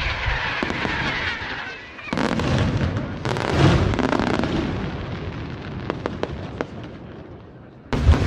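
Aerial firework shells bursting one after another in a professional display. There are booms just at the start and again about two and three and a half seconds in, scattered sharp pops around six seconds, and a loud new burst at the very end.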